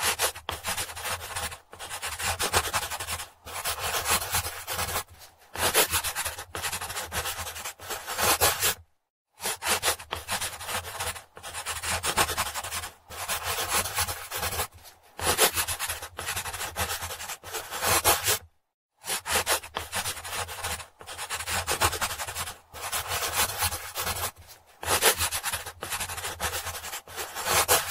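A dark pencil scratching across sketchbook paper in rapid back-and-forth shading strokes. The strokes come in runs of a few seconds, broken by short silences where the pencil lifts off the page.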